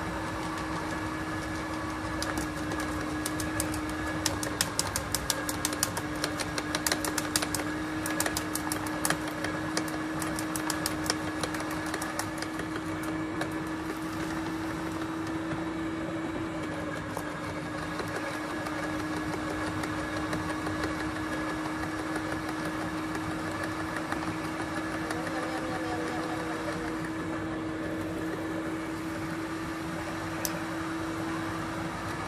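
Garden shredder running steadily, with a quick run of sharp cracks from about two to fourteen seconds in as branches are fed in and chipped.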